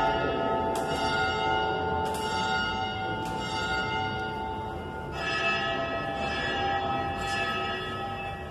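Church bells rung from a hand-pulled rope, struck about every second and a quarter with their tones ringing on between strikes, and a fresh, louder strike about five seconds in. The peal announces that the church doors are open.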